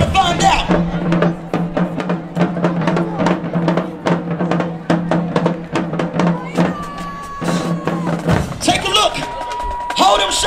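Marching band drumline, with snares, tenor drums, bass drums and cymbals, playing a fast run of strokes over a held low note. The low note cuts off about eight seconds in and voices follow near the end.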